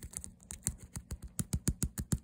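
Long fingernails tapping fast on a leather-look handbag: rapid, uneven clicks, about seven a second.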